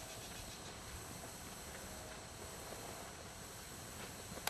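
Faint footsteps on a gravelly dirt track, with quiet outdoor background hiss.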